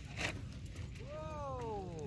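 A faint, drawn-out call from a person's voice, sliding down in pitch over about a second, starting about halfway through, over a low steady rumble with a light click near the start.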